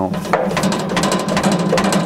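A bandsaw mill head being rocked by hand against its locking pins, rattling in quick, irregular metal clicks and knocks. The mill only wiggles a little bit, because the pins hold it on the track.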